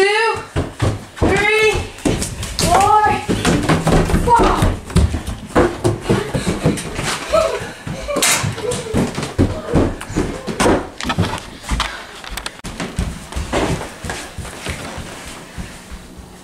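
A child's voice calling out in a few drawn-out shouts, followed by lively children's voices mixed with footsteps and knocks in a small room.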